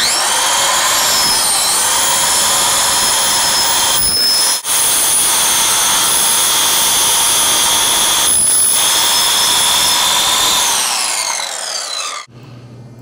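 Handheld electric circular saw starting up at full speed and cutting through a wooden broom-head block, its blade running into the metal staples that hold the bristles. A steady high whine with a brief dip a little before halfway, then a falling whine as the saw winds down near the end.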